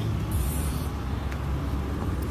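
Street ambience: a steady low rumble of traffic, with a brief hiss about half a second in.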